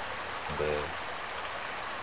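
Shallow creek water running over gravel and rocks: a steady, even rushing of the riffles.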